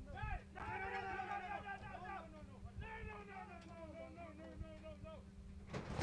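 Faint, indistinct voices of people talking, over a steady low hum.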